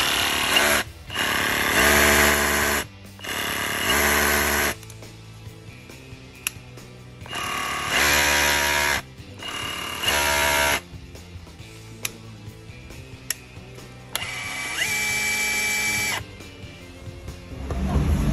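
Bosch GBH 187-LI cordless rotary hammer's brushless motor run in about five short trigger pulls of one to two seconds each, with a whine that rises in pitch as it spins up. A few sharp clicks fall between the runs.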